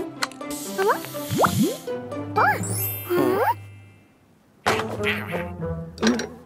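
Cartoon soundtrack music with comic sound effects: a burst of hiss and several quick rising and falling pitch glides over the first few seconds, then a short near-silent gap before the music picks up again.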